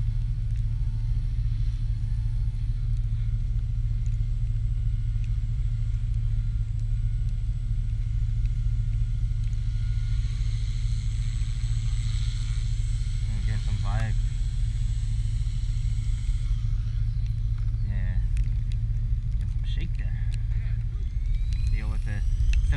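Small electric RC helicopter (Oxy 3+) in flight: a steady low rotor drone with a high electric-motor whine above it. In the last few seconds the pitch falls and the drone fades as the rotor winds down after landing.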